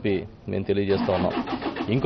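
A man speaking Telugu into reporters' microphones, with a vehicle engine running in the background.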